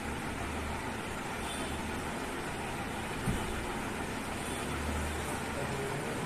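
Steady background noise, a low hum with an even hiss, with one soft knock about three seconds in.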